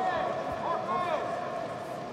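Indistinct voices of several people talking and calling out in a large hall, over a faint steady tone.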